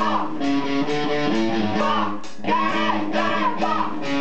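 Live band music: a repeating guitar riff played over drums.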